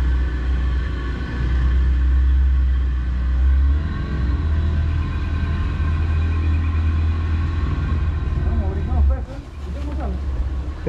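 Boat's outboard motor running steadily at low speed, with a whine of steady tones over a strong low rumble. The rumble dips briefly near the end.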